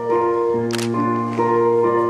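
Instrumental music on a keyboard instrument: held chords that change about once a second. A brief sharp click sounds about a third of the way in.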